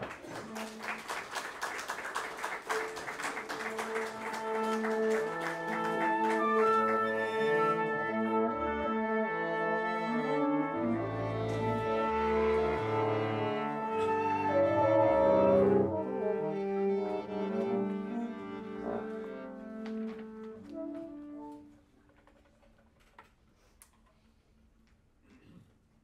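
Contemporary chamber ensemble of woodwinds, brass, strings, piano and percussion playing the opening of a piece: a flurry of fast repeated notes over held chords, then deep bass notes as the sound swells to its loudest past the middle. It dies away about two seconds before the end.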